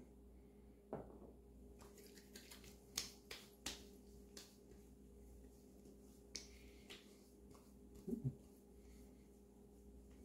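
Hands patting and slapping aftershave splash onto the face and neck: about ten soft, scattered slaps and taps over a quiet room.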